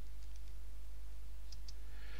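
Steady low electrical hum with a few faint computer keyboard key clicks about one and a half seconds in.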